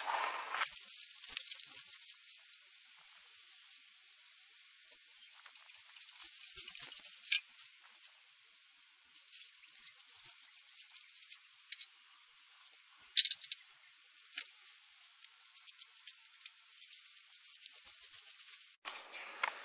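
Faint outdoor background: a quiet high hiss with scattered sharp clicks and ticks, two louder ones about seven and thirteen seconds in and a denser run of ticks near the end.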